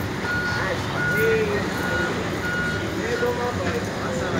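A vehicle's reversing alarm beeping: short, single-pitched high beeps repeating at even spacing over steady street traffic noise.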